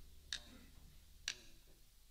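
Drumsticks clicked together in a steady count-in, about one click a second: two sharp clicks fall here, over a faint low hum, just before the band comes in.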